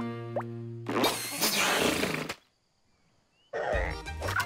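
Cartoon soundtrack: a held musical chord with a quick rising slide, then a noisy comic sound effect lasting just over a second. It cuts off abruptly into a moment of total silence before music resumes near the end.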